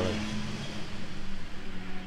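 Road traffic: a passing vehicle's steady rushing noise that eases off near the end, over a low steady hum.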